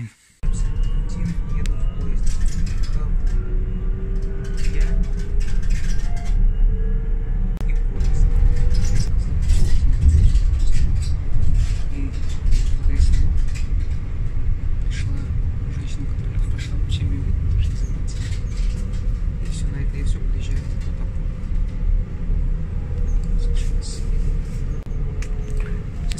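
Inside a moving regional train: a steady, loud rumble of the carriage running on the rails, with many short clicks and rattles. A faint whine rises slowly in pitch during the first few seconds.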